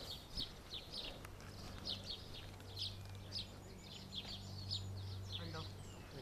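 Small bird singing, a string of short high chirps about two a second. A faint steady low hum comes in after about a second and a half and stops shortly before the end.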